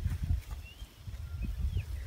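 Outdoor wind buffeting the microphone as a low, uneven rumble, with a few faint, short, high bird chirps.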